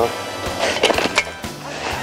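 Kick scooter wheels rolling over asphalt, with a few sharp clacks about a second in.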